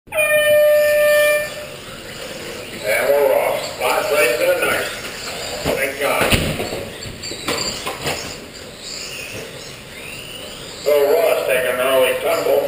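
A loud, steady electronic tone lasting about a second and a half at the very start, typical of an RC race timing system's start tone, followed by indistinct voices over background noise.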